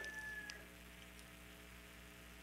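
A near-silent pause between speech, with only a faint steady hum underneath.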